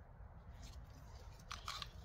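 Faint handling noise as two pocket knives are shifted in the hands, with two brief scratchy sounds near the end over a low steady rumble.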